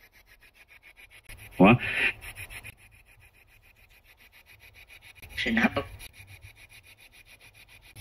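Spirit-box ('Vox') app on a phone sweeping through noise: a fast, even stutter of rasping static several chops a second. Two short, louder voice-like fragments break through, about a second and a half in and again about five and a half seconds in.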